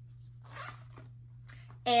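Zipper on a small Loungefly pouch being pulled open: a short rasp about half a second in, then a light click.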